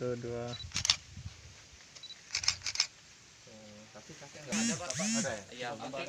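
A camera taking photos: a short high beep as it focuses, then a shutter click, then another beep and two quick clicks, amid people's voices.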